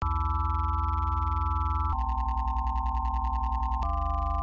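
Synthesizer chords of pure, sine-like tones held over a pulsing bass, changing to a new chord about halfway and again near the end. Fast, even ticking percussion joins at the first chord change.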